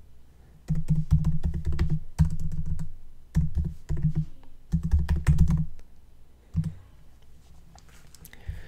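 Typing on a computer keyboard: several quick bursts of keystrokes that stop about six seconds in, then one last lone keystroke.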